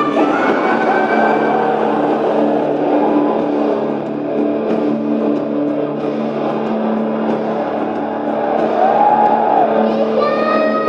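Heavy metal music played at a live concert, with sustained distorted guitar chords and a pitched line, probably sung, near the end.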